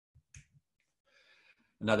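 A few faint short clicks, then a soft breath in, before speech resumes near the end.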